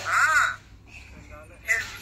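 A person's loud wailing cry, one short call that rises and falls in pitch over about half a second, then dies away to quieter sounds.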